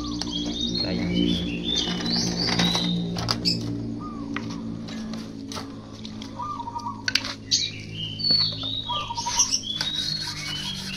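Small birds chirping repeatedly, over a steady low hum in the first few seconds, with a few sharp knocks later on.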